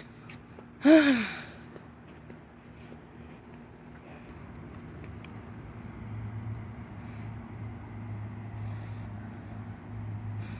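A woman's loud breathy sigh about a second in, its pitch falling, as she is winded from jogging. From about four seconds a car's engine hum slowly grows louder.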